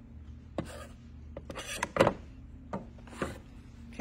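Rotary cutter slicing through quilt fabric along an acrylic ruler on a cutting mat, then the ruler and cutter being handled and set down: a few short rasping strokes and knocks, the loudest a sharp clack about two seconds in.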